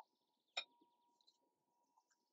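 Near silence with one sharp click about half a second in, while batter is poured from a glass bowl into plastic cups; faint birds chirp in the background.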